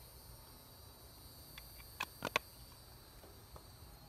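A few sharp clicks about two seconds in, from a Copenhagen wintergreen snuff tin being handled as a dip is packed, over a faint steady high-pitched chirring of insects.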